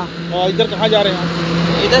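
A heavy truck passing close on a highway, its engine and tyre rumble growing louder as it comes alongside, with voices talking over it.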